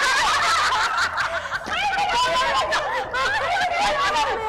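A group of women laughing together, with several voices overlapping in giggles and shrieks of laughter.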